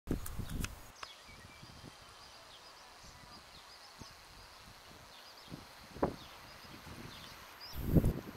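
Quiet outdoor ambience with faint, scattered bird chirps, broken by low bumps on the microphone in the first second and again about six and eight seconds in.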